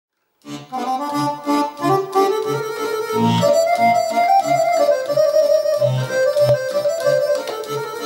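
Roland FR-8X digital accordion (V-Accordion) playing a tune. It starts about half a second in, with sustained melody notes from the keyboard over a steady beat of bass notes from the left-hand buttons, about three a second.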